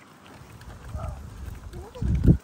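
Wind buffeting the microphone in uneven low rumbles that swell about halfway through, with a short rising high-pitched vocal sound near the end.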